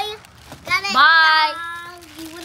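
A child's high voice: a brief call, then a long drawn-out high note lasting about a second, sung or called out playfully.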